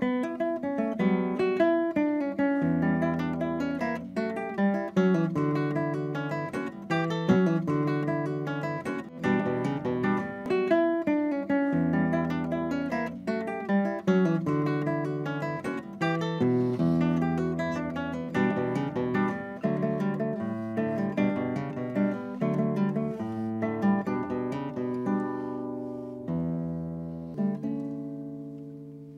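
Acoustic guitar music: a continuous flow of plucked notes and chords, fading out near the end.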